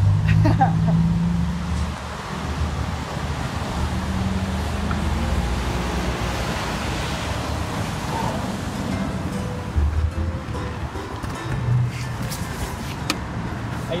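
Traffic on a rain-wet street: a steady hiss of tyres and passing cars with engines running, broken by a few sharp clicks near the end.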